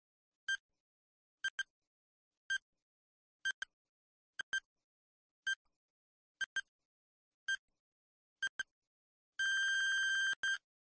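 Electronic quiz countdown-timer beeps: a short high beep about once a second, some doubled, then a longer steady beep near the end as the timer runs out.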